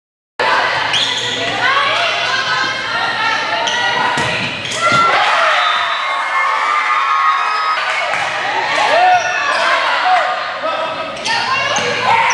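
Indoor volleyball match in a gym, starting abruptly about half a second in: players' voices and calls, sneakers squeaking on the hardwood court, and several sharp ball hits, all echoing in the hall.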